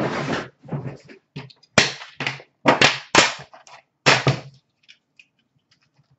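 Hands handling things on a shop counter: a run of sharp knocks, scrapes and rustles lasting about four and a half seconds, among them the lid coming off a metal trading-card tin. It falls quiet after that, with only a few faint ticks.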